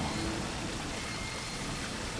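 Steady wash of water noise, with no distinct events.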